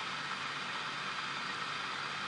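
Home-built Bedini pulse motor running: the in-line skate wheel spins past the coil with a steady, even whirring hum and hiss.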